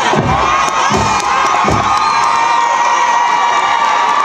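Crowd in the stands cheering and screaming loudly in response to the stadium announcer's introduction of the marching band, with a few low thumps in the first two seconds.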